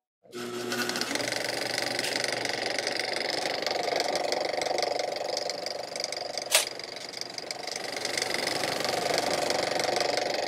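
A steady, fast mechanical rattle that starts suddenly just after the beginning, with a single sharp click about six and a half seconds in.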